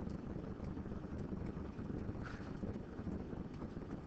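Steady low background hum and hiss of the recording, with a few faint ticks.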